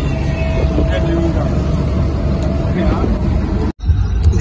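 Steady wind rumble on the microphone with road and engine noise from a moving vehicle. The sound drops out for an instant near the end.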